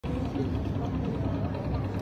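Indistinct voices of a group of people talking, over a steady low rumble.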